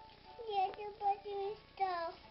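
A child singing a few short, high held notes without clear words, with a brief click about halfway through.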